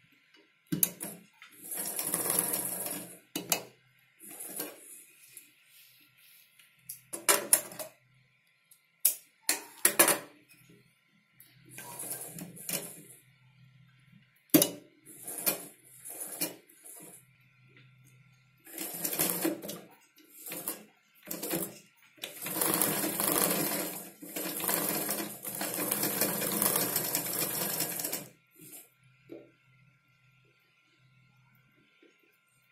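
Domestic sewing machine stitching fabric in several short runs, then one longer run of about six seconds near the end. There are sharp clicks between the runs.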